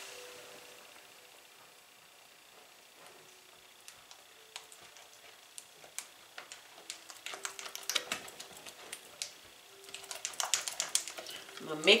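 A utensil scraping and clicking against a glass mixing bowl as thick cream cheese icing is stirred by hand. Sparse clicks at first, growing into busier runs of scraping and tapping over the last several seconds.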